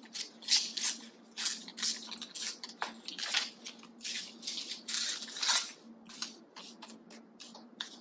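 Glossy magazine paper being torn by hand in a run of short, irregular rips and rustles, busier in the first half, with a faint steady hum underneath.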